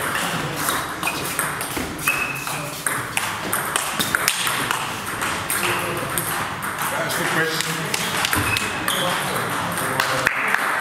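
Table tennis ball clicking sharply off bats and tabletops in a rally, then continued clicks from rallies at neighbouring tables, over background voices in the hall.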